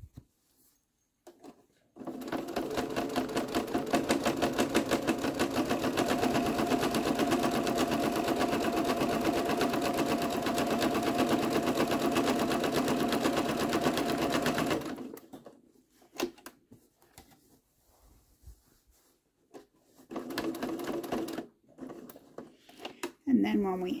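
Domestic sewing machine running a straight stitch through quilted patchwork fabric, with a fast, even needle rhythm. It starts about two seconds in, runs steadily for some thirteen seconds and stops, with a short burst of stitching later. This is a second pass of stitching just above the first, to hold the panel edges.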